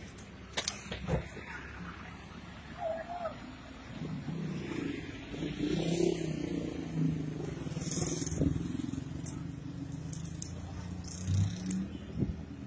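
A vehicle engine running at a roadside, with a steady low hum from about four seconds in. Faint voices sit in the background, and a few short knocks come in the first second or so.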